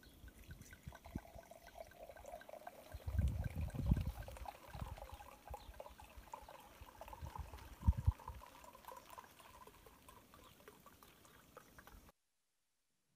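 Faint outdoor field ambience from a handheld recording: a low steady hiss with thin, repeated chirping. Low rumbling buffets of wind on the microphone come about three to four seconds in and again around eight seconds.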